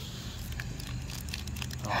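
A person sniffing at a small wrapped packet held close to the nose, with faint crinkling of the wrapper.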